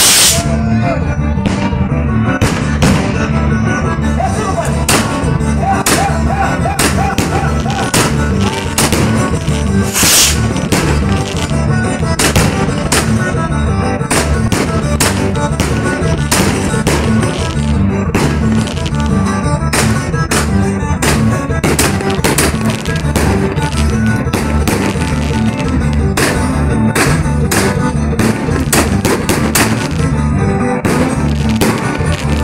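Music with a steady beat, overlaid by many sharp firework bangs and crackles from a castillo and aerial shells bursting overhead, a strong bang right at the start and another about ten seconds in.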